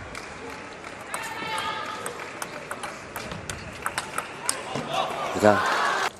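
Table tennis rally: the ball clicks sharply off the rackets and the table in a quick, uneven series of ticks for several seconds. A voice cuts in near the end.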